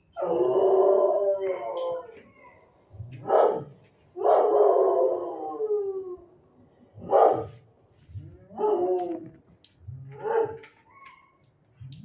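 Shelter dogs howling and barking: two long, falling howls, one at the start and one about four seconds in, with short sharp barks between and after them.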